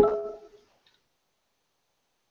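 Video-call audio breaking up: a half-second fragment of sound cuts in abruptly and fades, then the line goes dead silent, a sign of a dropping connection.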